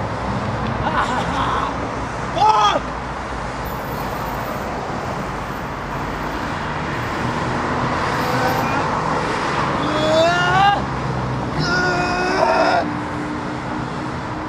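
Steady city street traffic, cars driving past, with a man's short wordless vocal sounds breaking in a few times.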